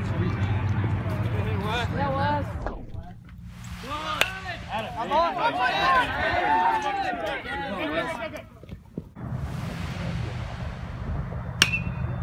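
Several spectators shouting over one another. Near the end comes the sharp, briefly ringing ping of a metal baseball bat hitting the ball.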